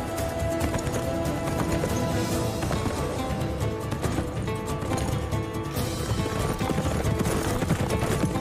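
Hoofbeats of a galloping horse under background music with long held notes.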